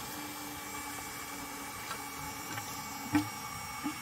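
Small battery-powered Rule maintenance pump running steadily with a faint hum, circulating water through the Naiad stabilizer's clogged heat exchanger to flush out dark debris. A single short click a little after three seconds in.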